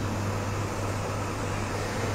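Steady low hum with an even hiss underneath: the background noise of the lecture room's microphone system.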